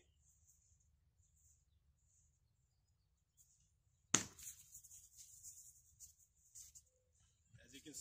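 A spear-dart is launched from a hand-held atlatl (spear-thrower), with one sharp, sudden sound about four seconds in, followed by faint rustling and shuffling.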